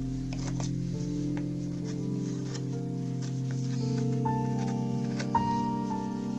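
Ambient background music with slowly shifting sustained chords. Faint scattered clicks sound beneath it, with one short, louder click near the end.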